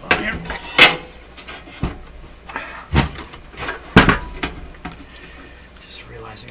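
Sharp knocks and clunks of a metal signal-generator chassis being handled and set about on a workbench: about five separate knocks, the loudest a little under a second in and at about four seconds.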